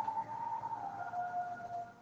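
A faint high steady tone that steps down to a slightly lower pitch about a second in, then fades.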